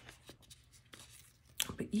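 Hands working on a paper planner: faint rustles and a few light taps, with a cluster of louder handling sounds near the end.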